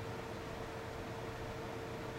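Steady room tone: an even hiss with a faint constant hum and nothing else happening.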